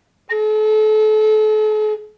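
High Spirits Sparrow Hawk Native American flute in A, aromatic cedar, playing one steady held note with all six finger holes covered: the flute's lowest note, A. The note starts about a third of a second in and lasts about a second and a half.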